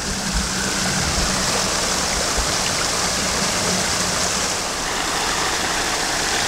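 Stream water pouring steadily over a small weir and a 3D-printed Coanda screen hydro intake, a continuous rush of water at the full flow of a rain-swollen stream.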